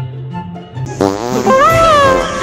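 Background music, then about a second in a loud, drawn-out wet fart sound effect with a wavering, bending pitch.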